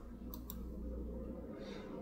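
Two short, faint clicks in quick succession, about a third of a second and half a second in, over a low steady hum, with a soft breath-like hiss near the end.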